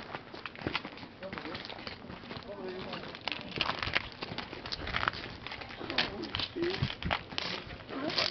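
Indistinct voices of people talking in the background, with many short clicks and knocks scattered throughout.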